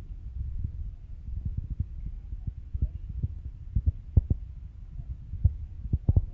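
Wind buffeting a phone's microphone: a steady low rumble broken by irregular thumps.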